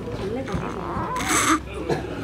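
People's voices: unclear talk with a drawn-out gliding vocal sound, then a short breathy hiss about a second and a quarter in.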